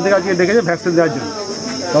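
A steady, high-pitched insect drone from a chorus of crickets or cicadas, heard under a man's voice talking.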